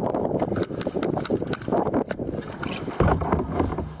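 Wind buffeting the microphone on a sea kayak, with light clicks of fishing gear being handled and a louder low burst about three seconds in.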